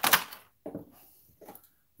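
A short loud rustle right at the start as gear is handled out of its packaging, followed by a few soft knocks and clicks of handling.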